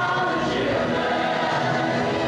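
A group of stage performers singing together in chorus, a woman's voice leading at the microphone.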